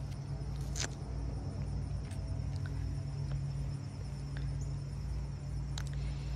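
Outdoor background noise: a steady low hum and rumble, with a faint high insect drone and two light clicks, one about a second in and one near the end.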